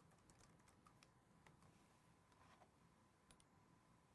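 Near silence, with a few faint, scattered clicks of typing on a computer keyboard.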